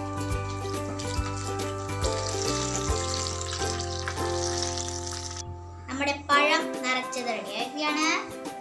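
Hot oil sizzling as battered banana fritters deep-fry in a wok, heard under background music. The sizzle stops abruptly about five seconds in, and a child's voice follows near the end.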